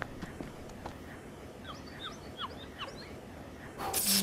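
Faint ambient room noise with a run of short, falling high chirps in the middle. Near the end comes a sudden burst of static-like noise, a digital glitch sound effect.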